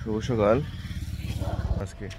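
A man's voice briefly, then a low, evenly pulsing vehicle engine rumble that grows louder and stops suddenly near the end.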